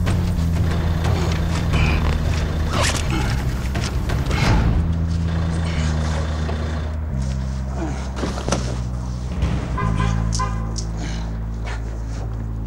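Dramatic background score of deep, held bass notes that shift pitch every second or two, with a few soft thuds.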